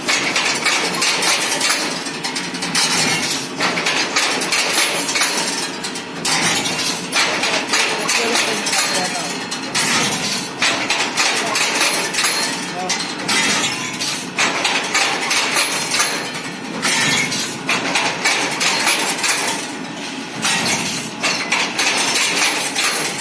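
Automatic CNC ring-making machine straightening and bending steel bar into stirrup rings, with metallic clinking and clatter as the bent rings fall onto the pile of rings. The noise swells and eases in a repeating cycle every couple of seconds.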